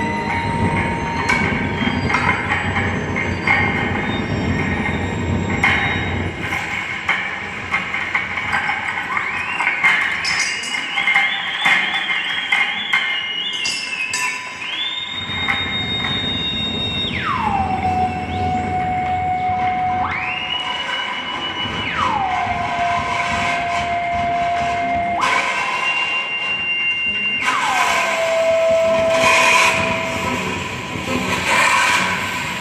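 Improvised experimental music built on metallic, bell-like ringing from hand-played bronze bowls, over a rumbling, textured noise bed. In the second half a high tone comes in several times, holds, then slides steeply down to a low held tone. Near the end a hissing wash swells up.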